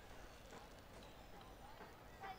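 Near silence, with faint, distant voices of players calling out on an open football pitch.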